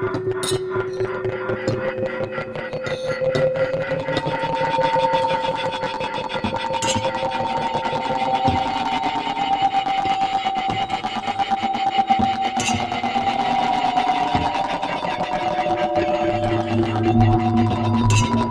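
Algorithmic electroacoustic computer music made in SuperCollider: held tones that step to new pitches every few seconds over a dense, rapidly pulsing texture, with a few sharp high clicks. A low hum comes in near the end.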